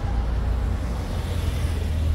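Steady low rumble of a moving car, road and engine noise with no distinct events.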